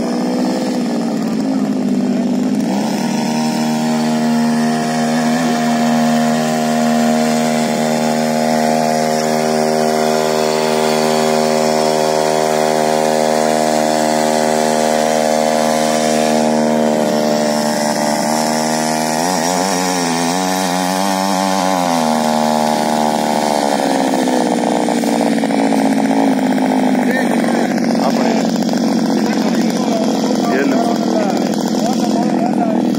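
Small petrol engine of a mini weeder (garden power tiller) running steadily while its tines churn loose soil. About two-thirds of the way through, its pitch wavers up and down for a few seconds, then settles again.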